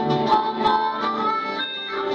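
Harmonica played into a microphone over acoustic guitar in a live blues number, with a held note that slides up in pitch about halfway through.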